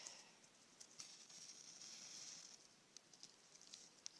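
Very faint: matches being struck, a soft scratchy hiss as they flare for about a second, with a few small clicks from handling.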